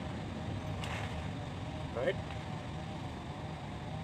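Steady low background hum, like a motor running, with one short spoken word about two seconds in.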